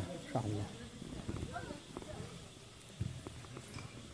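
A few scattered knocks from a hoe chopping into dry, hard soil, with faint voices in between.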